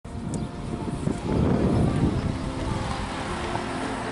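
A 1980 Honda motorcycle trike's engine running as the trike rolls up and stops. It is loudest about a second and a half in, then settles to a steady idle.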